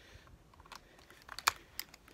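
Rossi Tuffy single-shot .410 shotgun being reloaded by hand: a few light clicks as a shell is drawn from the stock's shell holder and slid into the chamber, then a sharper snap about a second and a half in as the break action is closed.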